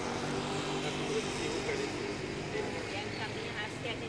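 Steady outdoor traffic noise with an engine running, and people talking in the background toward the end.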